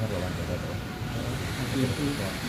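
Several people's voices talking at once over a steady low rumble.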